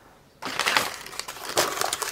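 Crinkling and rustling of wrapping being handled: a dense run of small crackles that starts about half a second in.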